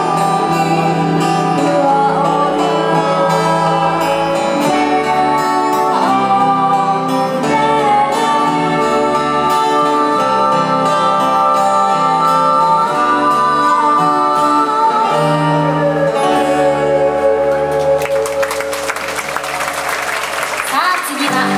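Two women singing a slow Hawaiian-style song into microphones over a live band with guitar, amplified in a large hall. The song ends about two seconds before the close, and audience applause begins.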